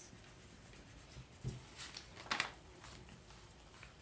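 Faint handling sounds of paper and coloured pencils on a tabletop: a soft thump about one and a half seconds in and a sharper click just under a second later, the loudest moment.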